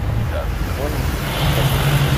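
A steady low mechanical rumble with a low hum that grows stronger in the second half, with brief snatches of voices early on.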